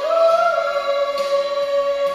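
A man sings a Tagalog love ballad into a microphone, holding one long, high note with strain, over instrumental accompaniment.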